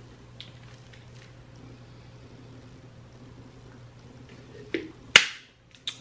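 Quiet room with a steady low hum, then a soft click and, about five seconds in, a single sharp click.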